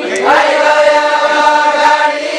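A group of voices singing a deuda folk song in unison, unaccompanied: a new phrase glides up about a quarter second in and settles on one long held note.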